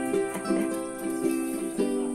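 Background music: a light plucked-string tune, with sharp-starting notes a few per second.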